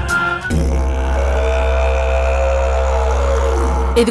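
Dramatic background score. A deep, steady drone comes in about half a second in, with long held higher tones over it that fade near the end.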